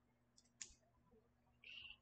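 Near silence: room tone, with one faint click about half a second in and a brief soft hiss near the end.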